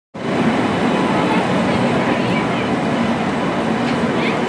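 Indian Railways passenger train, hauled by an electric locomotive, running slowly into a station, with a steady noise of coaches rolling along the track. Crowd chatter is mixed in.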